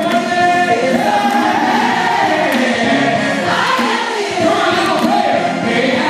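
Live gospel singing: a male lead singer on a handheld microphone and a female singer, joined by many voices singing together, with held notes that slide in pitch.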